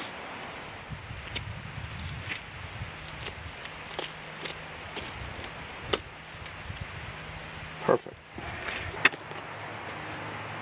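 Faint handling noises of a knife cutting a backstrap away from a hanging deer carcass: a few soft clicks scattered over a low, uneven rumble.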